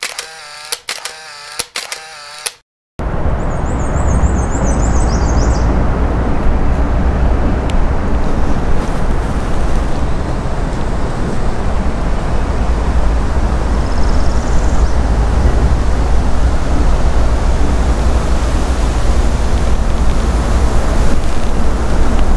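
Wind buffeting the microphone, a steady rumbling rush that starts abruptly about three seconds in after a brief silence. A short high bird trill sounds about a second after the wind starts, and a faint high chirp about midway. The first two seconds hold a different brief wavering pitched sound that cuts off.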